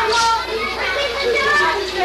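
A group of people chattering and calling out over one another, with children's voices among them.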